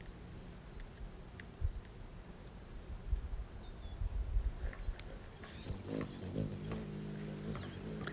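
Faint outdoor ambience with low wind rumble on the microphone. About six seconds in, a steady low hum begins: the wings of a hummingbird hovering at a nectar feeder.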